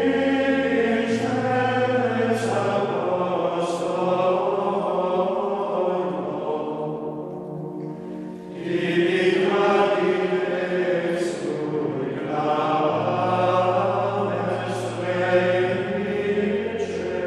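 Background music of a choir chanting slow, held notes over a steady low drone, dipping briefly about eight seconds in and then swelling again.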